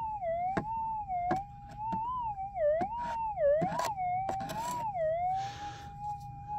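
Minelab GPX 6000 gold detector's steady threshold tone, rising and falling in pitch about five times as a rock is passed over the coil, then settling back to a flat hum near the end: the detector is signalling on a small bit of gold in one end of the rock. A few light knocks and a brief rustle of handling.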